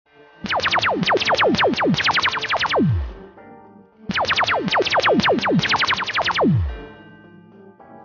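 Hip-hop beat intro: two runs of rapid, steeply falling synthesizer zaps, the last zap of each run dropping lowest into a deep tone. Quieter held keyboard notes follow near the end.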